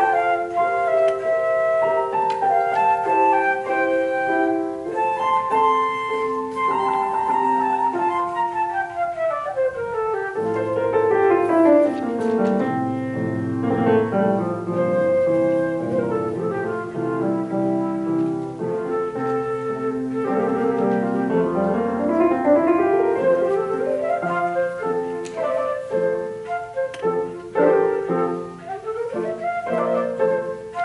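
Flute playing with grand piano accompaniment: a continuous melody of held notes and quick runs, one falling run of notes partway in and a rising run later, with low piano notes filling in below from about a third of the way through.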